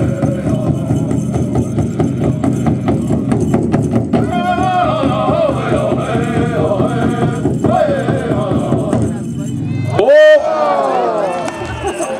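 Powwow drum group pounding a steady beat on a big drum and singing a fancy-dance contest song in high, strained voices. About ten seconds in the drumming breaks off and a single loud whoop rings out close by, followed by voices.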